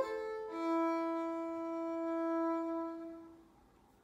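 Violin and viola holding a soft sustained chord. The notes change about half a second in, then the chord is held and fades away by about three and a half seconds, leaving near silence.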